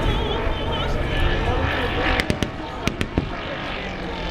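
Propeller aircraft at an airshow drone in the distance under crowd chatter, with a quick cluster of about five sharp cracks a little past halfway.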